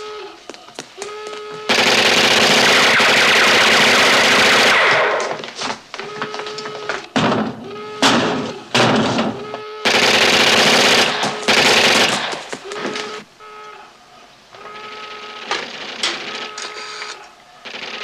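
Long bursts of machine-gun fire, one about two seconds in and another about ten seconds in, with scattered single gunshots between, and short steady tones in the quieter gaps.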